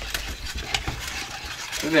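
Wire whisk stirring cocoa in a small stainless steel saucepan: soft scraping with a few light ticks of metal against the pot.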